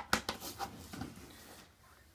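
Plastic golf discs knocking and rubbing together as a stack of them is handled, with a few sharp clacks in the first second, then quieter.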